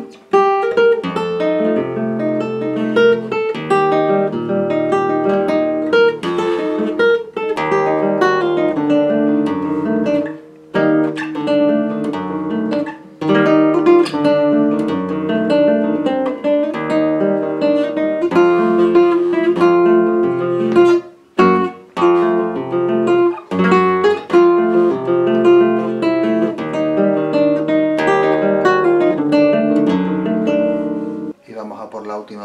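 Flamenco guitar playing a passage of a rondeña solo, picked notes and strummed chords ringing over low bass, with a few brief pauses. The guitar is in the rondeña's scordatura tuning, sixth string down a tone and third string down a semitone, with a capo at the first fret.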